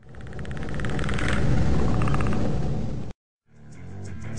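A heavy low rumble with a fast fluttering rattle above it swells up over about a second, holds, and cuts off abruptly about three seconds in. After a brief silence, electric guitar music starts near the end.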